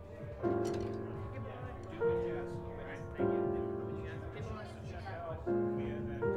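Grand piano playing slow chords, four struck over a few seconds, each ringing on and fading before the next.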